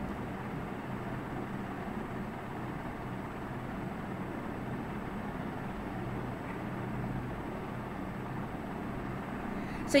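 Steady low background noise with a faint hum and no voice, until a word is spoken right at the end.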